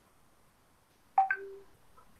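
Two quick electronic beeps about a second in, the second higher than the first, followed by a short, steady, lower tone.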